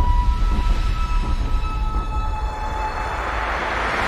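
Intro music for an animated logo reveal: a deep, heavy rumble under a few held high tones, with a hiss swelling toward the end.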